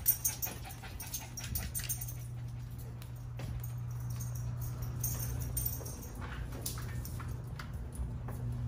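A small dog whimpering, over a steady low hum, with light clicks of steps on a hardwood floor.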